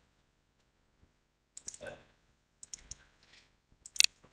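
Faint clicking at a computer: three quick clusters of clicks, the sharpest near the end, as the screen share is being set up again.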